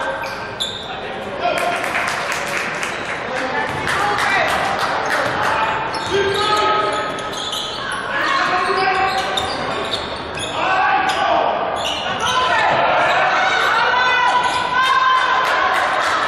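Live basketball play in a gym: a basketball bouncing on the hardwood court in repeated knocks, with players' and spectators' voices echoing in the hall.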